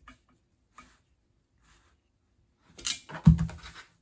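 A few faint clicks of a screwdriver working a small screw, then a quick cluster of metal knocks and rattles as rifle chassis parts are handled and fitted together, loudest a little past three seconds in.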